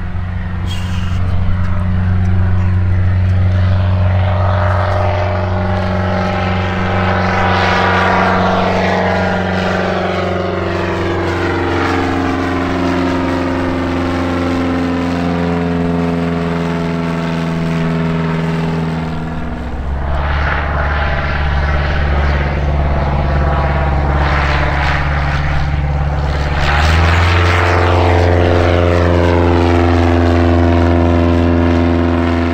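Single-engine propeller aircraft's piston engine running at high power as it climbs out towing an advertising banner. It is a steady drone with sweeping overtones as it moves past, and the note shifts about two-thirds of the way through and again near the end.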